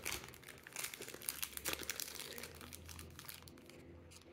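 Foil booster-pack wrappers crinkling as they are handled, a faint dense crackle that thins out toward the end.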